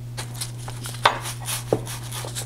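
Flat bristle brush stroking and dabbing PVA glue onto linen fabric on a board: a run of short brushing strokes and light taps, a couple louder than the rest. A steady low hum runs beneath.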